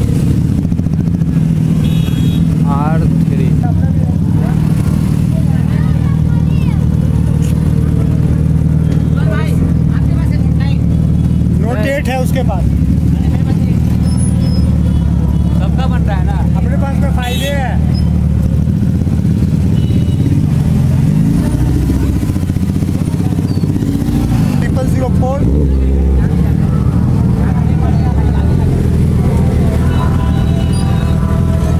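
Motorcycle engines running steadily at low speed in street traffic, a continuous low rumble with voices calling over it now and then.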